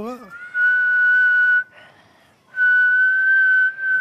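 A young girl whistling through her lips: two long, steady, held notes at the same high pitch, the second following a short pause.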